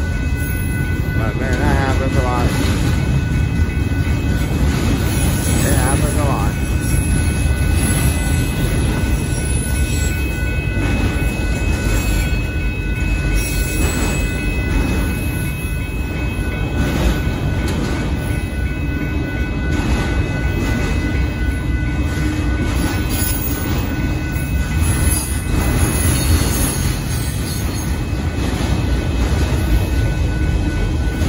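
Union Pacific mixed freight train's cars rolling steadily past at a grade crossing: a continuous loud rumble of wheels on rail. Brief wavering squeals, likely wheel flange squeal, come through in the first few seconds.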